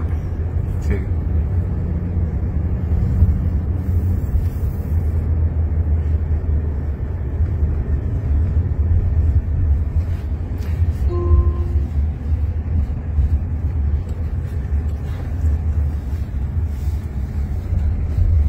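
Road noise inside the cabin of a moving Jaguar I-Pace Waymo robotaxi: a steady low rumble of tyres on the road, with no engine note because the car is electric. A brief tone sounds a little past the middle.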